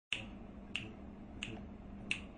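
Three finger snaps on a steady beat, about two-thirds of a second apart, over a faint background hiss.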